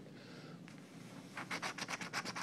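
A coin scratching the coating off a scratch-off lottery ticket in quick even strokes, about ten a second, starting about one and a half seconds in.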